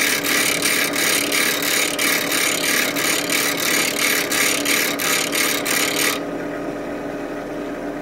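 Steel chisel being ground on a Delta bench grinder with a freshly dressed, aggressive wheel, taking the heel off the bevel to lower it toward 17 degrees: a harsh grinding hiss over the steady hum of the grinder. The grinding stops about six seconds in when the chisel comes off the wheel, and the motor keeps running.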